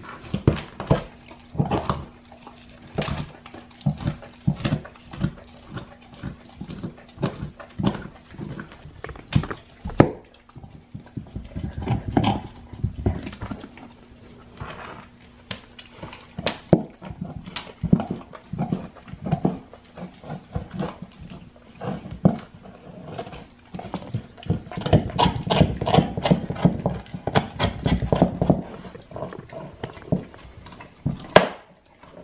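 Great Dane puppy chewing a raw deer shank: irregular crunches and cracks of teeth on bone and meat, with one sharp crack about a third of the way in and a busier stretch of gnawing near the end.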